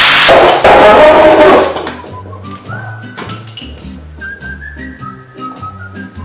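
A sudden loud bang that rings on for nearly two seconds: a cartridge going off as it is heated in a lighter flame. A whistled country-style song plays throughout.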